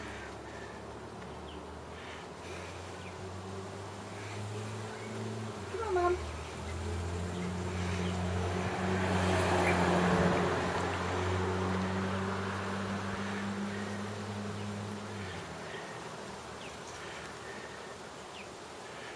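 A low, steady droning hum that changes pitch a few times and stops near the end. A swell of noise peaks about halfway through, and a short, sharp sound with a falling pitch comes about six seconds in.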